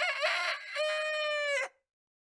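A rooster crowing once: a cock-a-doodle-doo that ends in a long held final note and stops sharply a little before the end.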